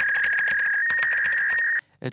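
Sound effect of rapid computer-keyboard typing clicks over a steady high electronic tone. The tone steps up slightly in pitch about a second in and cuts off suddenly just before the end.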